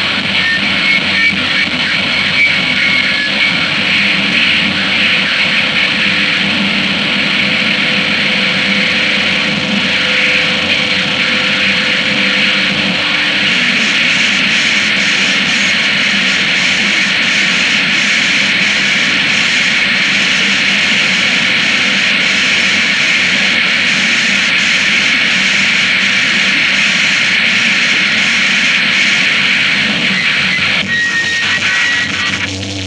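Harsh noisecore: a dense, unbroken wall of distorted noise, loudest in the upper mids, with a faint regular flutter in the highs from about halfway.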